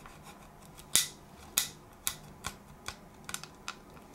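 Sharp clicks and taps from handling a model airliner and its packaging. Two loud clicks come about a second in and a second and a half in, followed by a run of softer, irregular ones.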